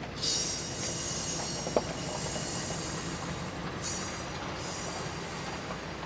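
Passenger train's steel wheels squealing high-pitched on the rails as the Amfleet coaches roll away, over a steady low rumble. The squeal starts suddenly near the beginning, breaks off about four seconds in, returns briefly and fades; a single sharp click comes about two seconds in.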